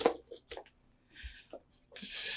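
A few sharp clinks and clicks, the first the loudest, with a brief hiss about a second and a quarter in.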